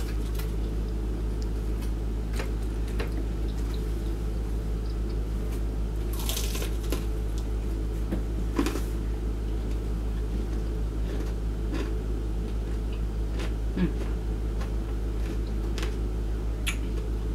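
Close-miked chewing of fried shrimp and chicken: scattered smacks and clicks from the mouth, with a longer noisy crunch about six seconds in. A steady low electrical hum sits under it throughout.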